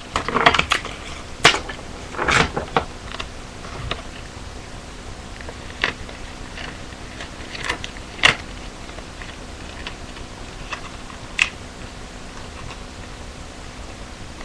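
Paper and clear tape being handled up close: a few crinkling rustles in the first three seconds, then scattered sharp clicks and taps.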